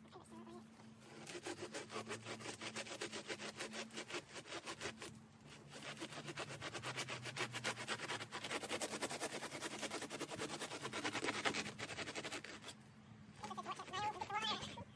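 Rapid, rhythmic rasping strokes of a serrated blade sawing through the dry, fibrous dead base of an old elkhorn fern, cutting away the built-up dead layer to expose new roots. The strokes break off briefly about five seconds in and stop near the end.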